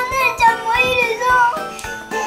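Children singing along over upbeat background music.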